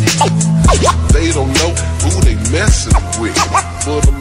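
Hip hop beat from a 1990s Southern gangsta rap track: deep bass, kick drum and hi-hats, with a pitched line gliding up and down over it.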